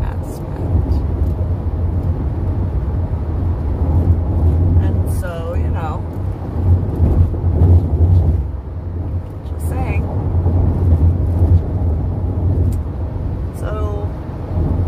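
Steady low road and engine rumble inside a moving car's cabin, with a few short voice sounds about five seconds in, around ten seconds and near the end.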